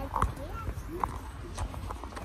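Footsteps on a paved sidewalk: a few sharp taps about half a second apart, with faint voices underneath.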